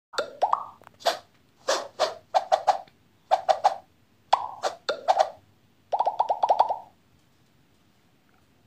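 Channel logo intro sound effect: a series of short, plopping pops in quick clusters of one to three, some with a slight upward pitch, ending with a rapid run of about eight pops.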